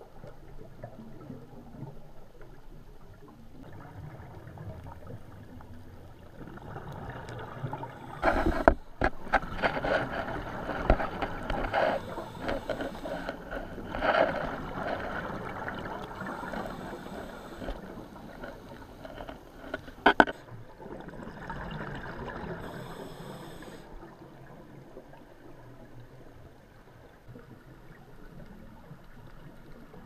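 Muffled underwater sound through a camera housing on a scuba dive: rushing, gurgling bubble noise from a diver's exhalations, loudest from about a third of the way in to past the middle and again briefly later, with two sharp knocks near the start of the loud stretch and about two-thirds of the way in.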